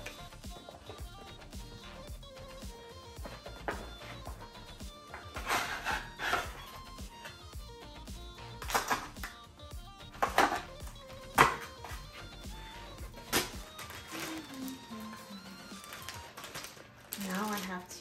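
Cardboard figure packaging being opened: several short, loud tearing and scraping sounds as tape is pulled off a cardboard box, over steady background music.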